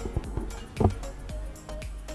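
Music with a beat playing from the iPad Pro 11-inch (2020)'s four built-in speakers, as a test of the speakers; a strong drum hit comes about a second in.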